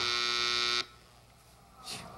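Game show wrong-answer buzzer: one steady, harsh buzz of just under a second that cuts off suddenly, rejecting the contestant's guess.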